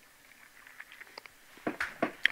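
A quiet pause holding a few faint, scattered clicks and ticks in its second half, a little stronger near the end.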